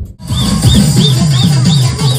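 Loud electronic dance music starting suddenly just after a brief gap, with a quick repeating pattern of falling bass notes, each topped by a high chirping synth sound, nearly four a second.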